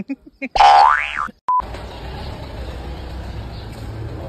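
A cartoon-style 'boing' sound effect whose pitch sweeps up and then falls, followed by a very short beep. After that a steady low hum continues.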